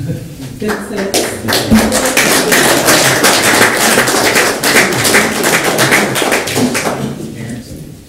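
Audience applauding: many hands clapping, swelling up about a second in and fading away near the end, with some voices under it.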